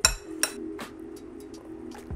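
Metal spoon clinking against a glass mixing bowl while stirring oatmeal: one sharp clink at the start, then a few lighter taps.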